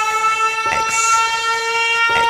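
Sustained electronic synth chord holding steady after the drums and bass drop out, with faint soft percussive accents about every second and a half.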